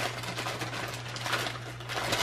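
Clear plastic bag crinkling and rustling in irregular bursts as it is cut open by hand, with a few light clicks.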